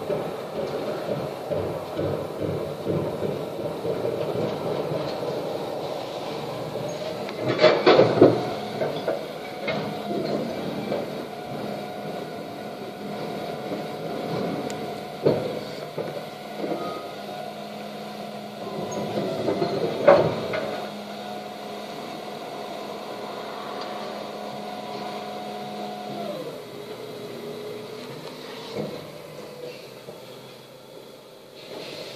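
Volvo refuse lorry with a Farid rear-loader body working at the kerb: its engine runs with a steady mechanical whine from the hydraulic bin lift and compactor, which drops to a lower pitch near the end as the cycle finishes. Two loud clattering bangs, one about a quarter of the way in and one about two-thirds in, as wheelie bins are tipped at the hopper.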